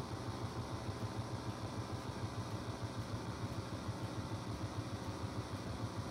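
A steady low mechanical hum with no other event standing out.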